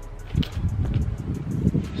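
Low, irregular rumble of wind and handling noise on a handheld camera's microphone, starting about half a second in.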